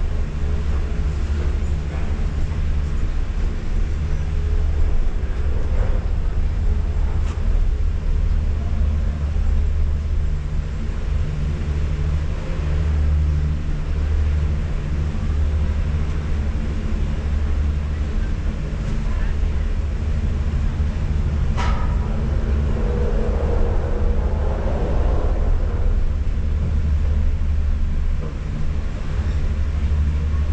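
Steady low rumble of gondola station machinery, heard from inside a cabin as it is carried slowly through the terminal, with one sharp click a little past the middle.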